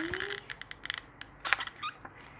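Thin clear plastic mold crackling and clicking as it is flexed to pop out a set plaster of Paris cast, in a quick irregular run of small clicks.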